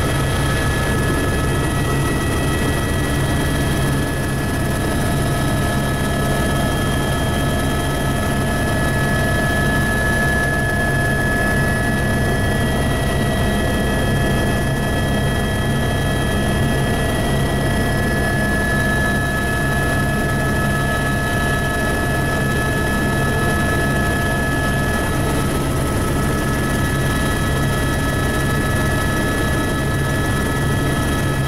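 Helicopter in flight heard from inside the cabin: a loud, steady engine and rotor drone with several constant high whining tones over it.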